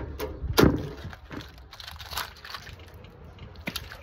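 A crab being cleaned by hand: one sharp, loud crack about half a second in as the top shell is pulled off the body, then a few fainter cracks and clicks as the body is broken apart.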